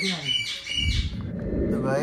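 A toddler's shrill, high-pitched squeal in two short bursts, followed by a muffled low rumble.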